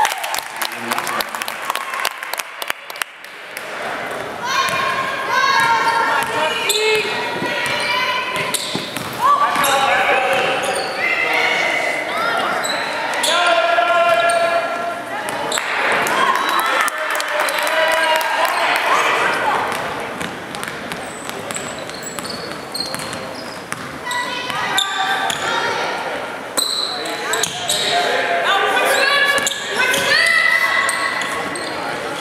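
Basketball game sounds in a large gym: the ball bouncing on the hardwood court among frequent short knocks, with players, coaches and spectators shouting and calling out, echoing in the hall. There is a brief lull about three seconds in.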